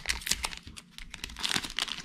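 Shiny trading card booster pack wrapper crinkling and tearing as it is opened by hand: a quick run of sharp crackles, with a brief lull a little before halfway.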